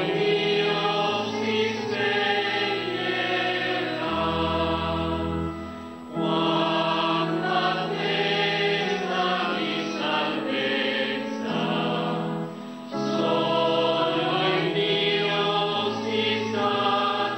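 A slow religious hymn sung by a choir in full, held chords. It comes in long phrases with short breaks about six seconds in and again about twelve and a half seconds in.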